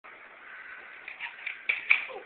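Pogo stick bouncing on a concrete driveway: a quick run of sharp clanks and knocks starts about a second in, the last two the loudest.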